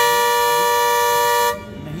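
Bus horn sounding one loud, steady blast about a second and a half long, then cutting off suddenly: the signal that the bus is about to leave.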